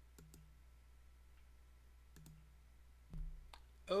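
Computer mouse clicks, a few short clicks in pairs, followed a little after three seconds by a brief low thump.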